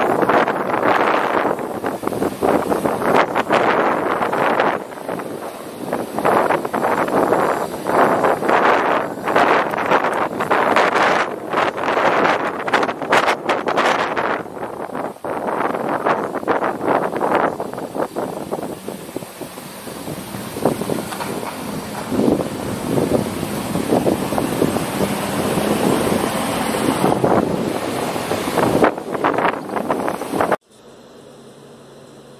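Wind buffeting the microphone in uneven gusts, over road noise from moving along a paved-stone street.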